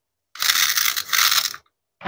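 Hands rubbing and handling a plastic toy dragon fruit, a loud rasping scrape in two strokes with a brief break between them.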